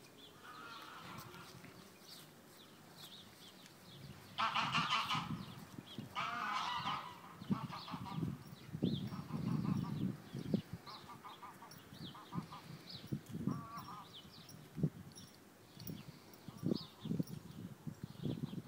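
Goose-like honking bird calls: two long loud calls about four and six seconds in, then a run of shorter calls. Low thuds and rustles sound in between.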